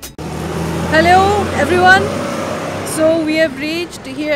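Steady low rumble of a moving car, heard from inside it, with a voice speaking over it in two short stretches.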